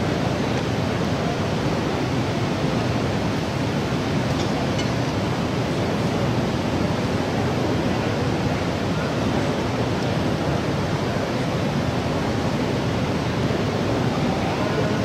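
Steady background noise of an indoor sports hall: an even hiss with no distinct clicks, calls or other events.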